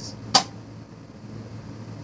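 Nerf Zombie Strike Sidestrike spring-plunger blaster firing once with a short, sharp pop about a third of a second in. It is loaded with a tipless dud dart, which it shoots less far.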